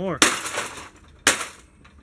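Sledgehammer blows on the sheet-steel chassis of an Apple G3 desktop computer: two hard strikes about a second apart, each ringing out briefly.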